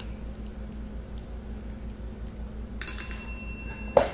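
Chrome desk service bell struck once by a cat, giving a single bright ding about three quarters of the way in that rings on and fades over about a second.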